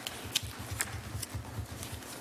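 Light clicks, about two a second, over soft low knocks: desk handling noise while a record is being looked up.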